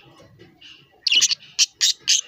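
Budgerigar chirping: a quick run of four loud, sharp, high-pitched calls starting about a second in, after faint softer chatter.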